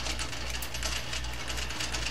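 Light metallic clinks and taps of steel tooling being handled on a metal lathe's carriage, over a steady low hum.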